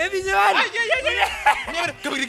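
A man laughing in short chuckles, mixed with bits of voice.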